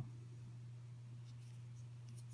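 Faint handling noise of small plastic servo cases turned in the fingers, with a few light ticks in the second half, over a steady low hum.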